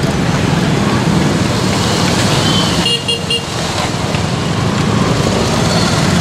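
Motorcycle and scooter traffic running close by, with a vehicle horn giving a few short beeps about three seconds in.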